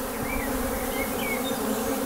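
Honeybees buzzing in numbers around the entrances of wooden hives: a steady, even hum, with a few faint short chirps over it.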